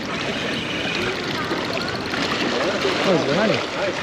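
Water washing and lapping steadily against shoreline rocks, with a person's voice breaking in a couple of times in the second half.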